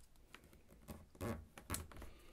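Origami paper rustling under fingers as folds are pressed flat, a few short scratchy rustles past the middle.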